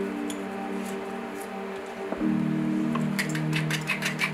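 Background music with sustained chords. About three seconds in, a hand-twisted pepper mill starts grinding over the meat in a quick run of rasping clicks.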